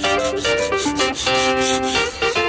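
A sheet of sandpaper rubbed by hand over rusty, painted steel trailer fender in quick back-and-forth strokes, with background piano music.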